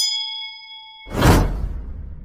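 Outro sound effects for a subscribe-button animation: a bright notification-bell ding rings for about a second. Then, about a second in, a loud swelling whoosh with a deep low end fades out.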